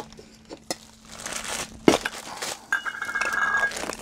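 Plastic bags crinkling and a metal Funko Soda can clinking as the figures are handled and unwrapped, with a few sharp clicks, the loudest about two seconds in. Near the end comes a short, thin, steady squeak.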